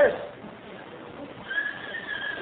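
Laughter from a congregation after a joke, heard on a hissy old tape recording, with a thin, high, held tone coming in about one and a half seconds in.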